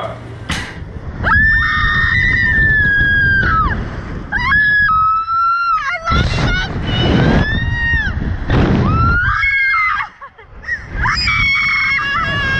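Two young women screaming as a slingshot ride flings them into the air: a run of long, high-pitched screams, one after another, with a brief lull about ten seconds in. Wind rushes over the microphone underneath.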